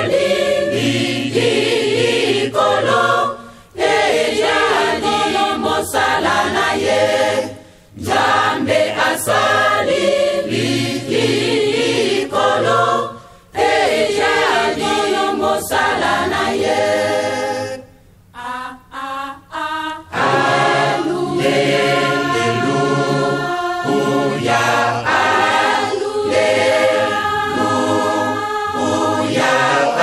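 A choir sings a Kimbanguist religious song, phrase by phrase with short breaks between. About two-thirds through there is a brief, quieter broken stretch, then the choir comes back fuller and sings on without a break.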